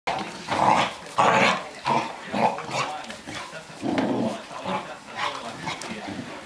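Two dogs play-fighting, growling in a string of short, irregular bouts, the loudest in the first second and a half.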